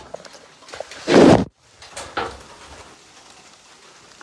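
Phone microphone handling noise: a loud, brief rustle about a second in as the phone is fumbled, then the audio cuts out for a moment, with a smaller rustle after and a faint steady hiss behind.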